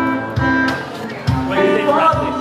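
Live acoustic band music: acoustic guitar with a steady low beat. Voices sing over it in the last half-second.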